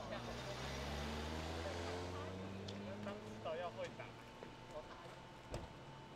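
A motor vehicle's engine running, its pitch rising steadily over the first three seconds as it speeds up, with voices in the background and a single sharp knock near the end.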